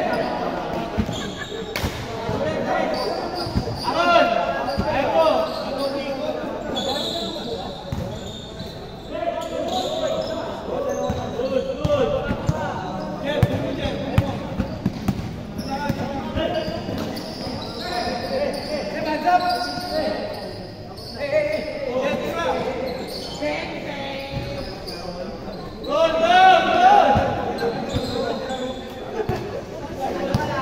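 A basketball being dribbled and bouncing on a hardwood-style court during a game, with players' voices calling out, all echoing in a large hall.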